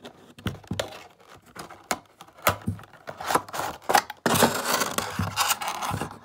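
Cardboard box and plastic packing tray of a die-cast model airplane handled by hand during unboxing: scattered scrapes and clicks, then a denser stretch of scraping as the tray comes out near the end.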